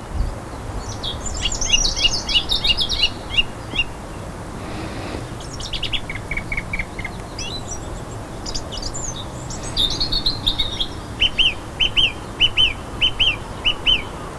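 Birds singing outdoors: bursts of quick high chirps and trills, then a run of evenly spaced repeated notes, about three a second, near the end, over a low outdoor background noise.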